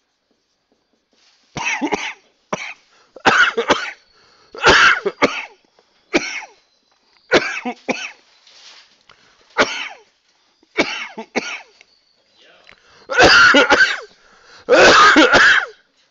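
A person's coughing fit: a long run of short coughs starting about a second and a half in, ending in two longer, loudest bouts near the end.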